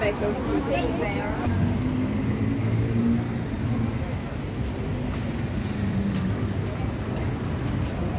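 Street traffic: vehicle engines running and passing on a busy town street, with a low engine hum close by through the middle. Passersby's voices are heard briefly at the start.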